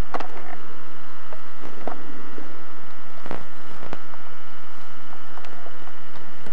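Steady electrical hiss with a faint high whine from the recording, broken by scattered light clicks and knocks, the clearest a little past the middle, as the camera is moved about among wooden roof trusses.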